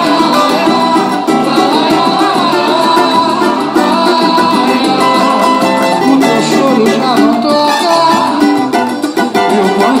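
A cavaquinho strummed in a steady rhythm, playing chords.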